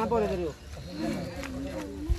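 People's voices calling out: a long shouted call falling in pitch at the start, then more calling from about a second in.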